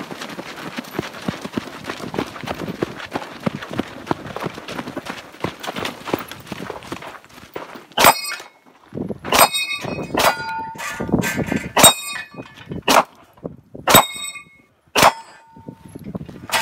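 For the first half, movement noise: footsteps on dirt and gear rattling. Then about eight gunshots, roughly one a second, each followed by the ringing clang of a hit steel target.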